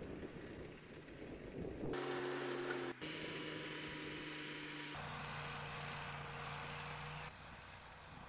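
A Ford farm tractor's engine runs steadily while pulling a peanut digger-inverter through the field. The sound jumps abruptly several times as the shots change.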